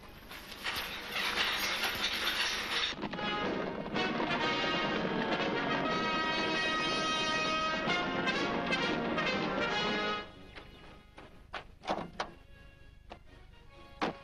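Brass band music playing held chords, stopping abruptly about ten seconds in, after a noisy opening stretch. A few scattered knocks follow in the quieter last seconds.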